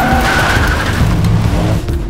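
Film chase sound mix: a car and a lorry running side by side, with a high steady screech through about the first second, over background music.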